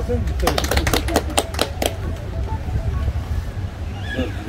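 A quick, uneven run of about a dozen sharp clicks or taps over about a second and a half, starting just after the opening, over a steady low rumble.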